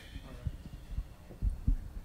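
Several soft, low thumps, about five or six scattered over two seconds, between stretches of speech.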